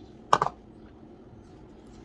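A single short clack about a third of a second in: a measuring cup knocking against a stainless steel mixing bowl as flour is emptied into it.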